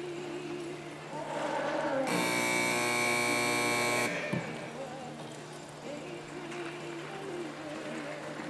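Arena buzzer horn giving one steady blast of about two seconds, starting and stopping abruptly about two seconds in: typical of the signal that a cutting horse's run time is up. Background music plays under it.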